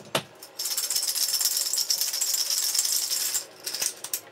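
Ice rattling in a metal cocktail shaker shaken hard and fast for about three seconds, after a single sharp knock just before.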